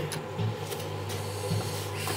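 A sheet of paper being folded and creased by hand into a paper airplane: a few soft rustles over a steady low hum.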